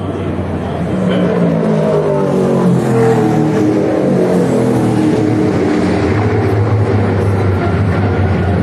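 Race car engines running on the circuit, several notes overlapping. Their pitch climbs for the first few seconds, then drops away, and ends on a steadier low drone.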